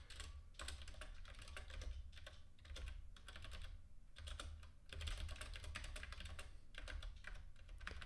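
Computer keyboard typing: quick runs of keystrokes broken by short pauses.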